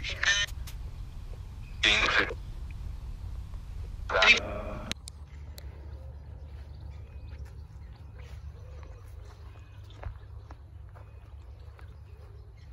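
Necrophonic ghost-box app sounding through a phone's speaker: a steady low hum with three short, echoing voice-like fragments. It cuts off about five seconds in, leaving quiet outdoor ambience.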